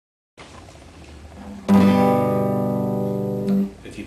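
Classical guitar: one chord strummed about halfway in, ringing and slowly fading, then cut off shortly before the end.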